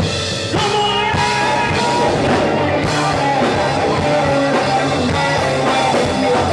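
Live rock band playing loud: electric guitars, bass guitar and drum kit with a singer's vocals, the full band coming back in hard about half a second in.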